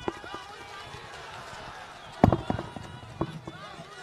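Several people talking at once with crowd chatter, and a few knocks and thumps on the stage microphone, the loudest about two seconds in.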